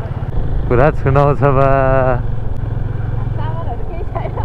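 Motorcycle engine running steadily at low revs. A voice talks over it from about a second in, for roughly a second and a half.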